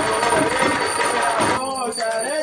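Small handheld puja bell rung continuously during the aarti over singing voices; the ringing stops suddenly shortly before the end, leaving a man's singing.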